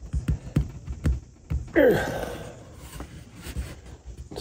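A man's strained grunt of effort, falling in pitch, about two seconds in, as he forces a CA-glued 3D-printed part by hand trying to break the glue joint. A few light knocks of the plastic part come before it.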